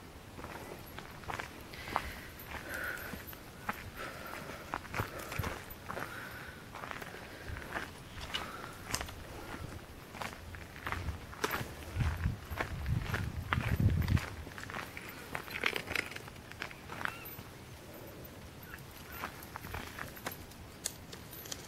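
Footsteps on a gravel path: an irregular run of short crunches and clicks, with a louder low rumble for about two seconds past the middle.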